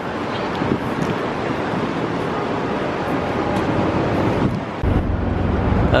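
City street traffic noise with wind buffeting the microphone; a heavier low rumble comes in about five seconds in.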